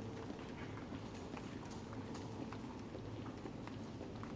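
Footsteps and the taps of a metal walking cane clicking irregularly on a hard tile floor, over a low steady hum in a large hall.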